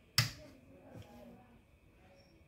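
One sharp click of the egg incubator's control-panel rocker switch being pressed about a quarter second in, switching on a test run of the egg-turner timer. Faint low sounds follow.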